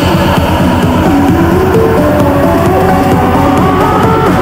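Loud electronic dance music in a live trance DJ set: a fast-pulsing bass under a synth melody that climbs in steps from about a second in.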